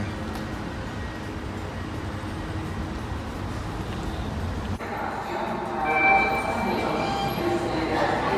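Steady low rumble of a subway station's underground ambience, broken off abruptly a little under five seconds in and followed by busier sound with several held tones.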